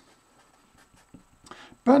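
Marker pen writing on paper: faint short strokes of a word being written. Speech begins near the end.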